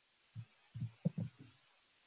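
Several soft, low thumps of clicks and taps on a computer, the first about half a second in and a quick cluster after a second.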